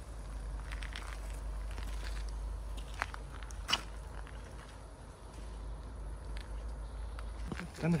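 Footsteps on a forest floor, with two sharp snaps a little under a second apart about three seconds in, over a steady low rumble. A man starts speaking at the very end.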